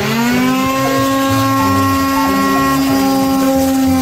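Electric sander switched on, its motor spinning up to pitch in the first half-second and then running at a steady high hum.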